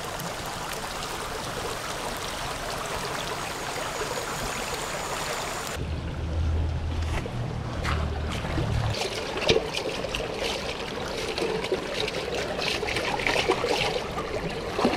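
Shallow river running over stones, a steady rush of water. In the second half there is splashing and clattering as a metal cooking pot is dipped into the stream to fill it.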